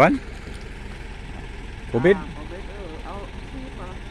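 Mostly speech: one short spoken word about two seconds in and faint voices in the background later, over a steady low hum.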